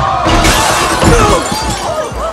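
A loud crash of breaking glass just after the start, with voices and music underneath.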